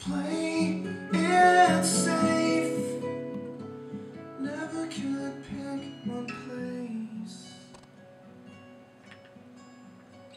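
Acoustic guitar music, strummed, loudest in the first three seconds and softer after about seven seconds.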